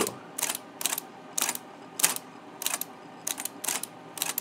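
1953 IBM Model A electric typewriter being typed on, about a dozen sharp key-and-typebar clacks at uneven intervals. Each stroke steps the carriage along one space, with the motor running steadily underneath.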